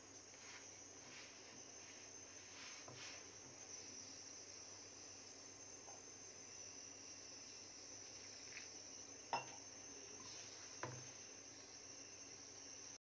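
Very faint soft rubbing of a hand working flour and dough in a steel bowl, over a steady high-pitched whine, with two light clicks near the end.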